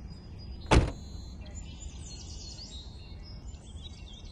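A car door shut once with a solid thud a little under a second in, then birds chirping faintly over a low outdoor rumble.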